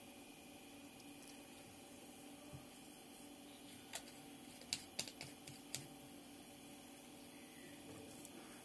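Near silence with a low steady hum, then about five faint, short clicks a little past the middle as the small plastic fill-solution bottle and the sensor's screw cap are handled.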